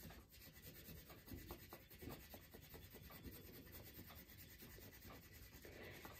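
Faint scratchy rubbing of a wax crayon stroked quickly back and forth across cardstock laid over a leaf. It makes a run of short, repeated strokes.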